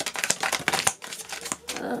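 Tarot cards being pulled from the deck and laid down on a table: a quick, irregular run of crisp card snaps and clicks.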